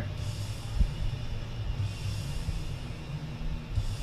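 Background music, with a single dull thump a little under a second in.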